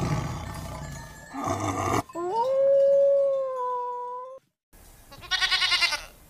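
A rough, growling animal sound, then one long call that rises in pitch and holds steady for about two seconds. Near the end a goat bleats with a quavering voice.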